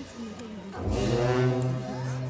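Tibetan long horns (dungchen) sounding a steady low drone as accompaniment to a monastic masked dance; the drone dips briefly and swells back louder about a second in.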